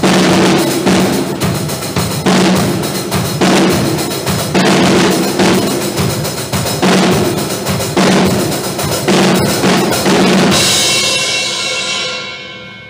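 Acoustic drum kit played live: a steady run of bass drum, snare and tom hits with cymbals. About ten and a half seconds in, a cymbal crash is left ringing and fading.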